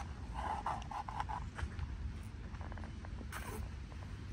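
Bubble tea with tapioca pearls being sucked up through a wide plastic straw: a run of short slurps in the first second and a half, then a brief hiss a little after three seconds, over a low steady rumble.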